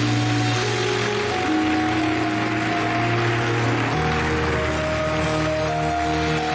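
Held keyboard chords with a steady sustained bass that changes note about four seconds in, over an even wash of congregation noise, typical of clapping and shouting during worship.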